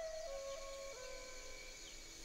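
Soft film-score music: a few long held notes that step slightly in pitch and slowly fade.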